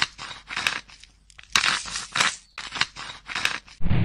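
Dubbed ASMR sound effect of a knife scraping and cutting through crunchy growth: a rapid series of short rasping, crunching strokes, about three a second, with a duller low thud near the end.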